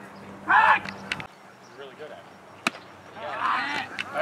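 Shouted voices from the baseball field and sidelines: one loud call about half a second in and more voices near the end. A single sharp knock comes about two-thirds of the way through.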